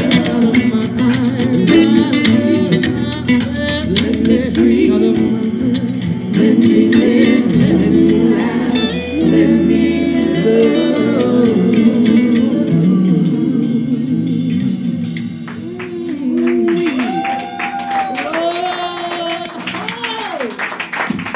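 A woman singing an inspirational gospel-style song to grand piano and electric bass, played live in a room. Hand claps join in near the end.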